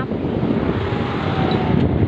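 A small vehicle's engine running steadily as it rides along, with road and wind noise in a constant rumble. A faint tone falls slightly in pitch through the middle.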